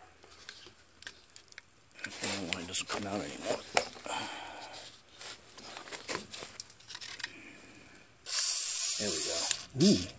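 Liquid Wrench penetrating oil aerosol can spraying through its straw nozzle: one steady hiss lasting about a second and a half, near the end, leaving foam on the axle. Before it come light clicks and knocks from handling the can.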